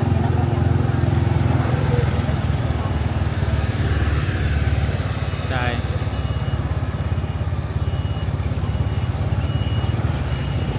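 Motor scooter engine running close by, a steady low drone with street traffic around it. A voice is heard briefly about halfway through.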